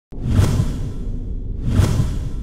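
Two whoosh sound effects about a second and a half apart, over low, steady background music.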